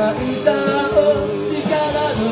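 Live pop-rock song: a woman singing into a microphone over electric guitar and a steady beat.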